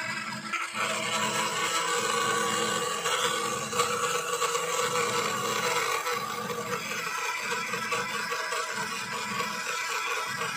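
Small CNC spindle motor of a TOYDIY 4-in-1 3D printer's CNC toolhead running steadily as its bit carves into the workpiece, a constant motor whine with scraping from the cut.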